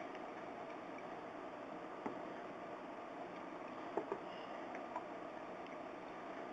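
A few faint, scattered clicks from a glass jar of ammonium nitrate and water being mixed to dissolve the salt, over low room noise.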